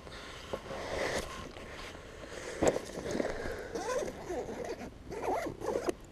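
A soft-sided tackle bag being unzipped and rummaged through: irregular rustling and scraping, with a sharp click about two and a half seconds in.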